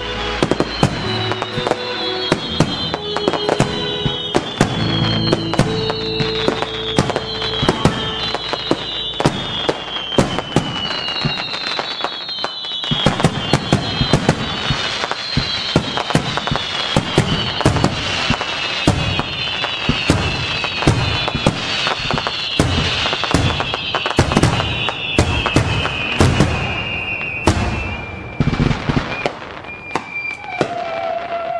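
A dense run of sharp cracks and bangs with repeated high falling whistles, laid over music whose notes drop away about twelve seconds in while the cracking goes on.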